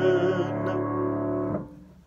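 Piano holding the final chord of a three-part hymn acclamation, with a sung note in vibrato ending a moment in. The chord is released and cuts off about a second and a half in.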